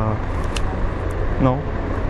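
City street traffic: a steady low rumble of passing vehicles, with one short spoken word about halfway through.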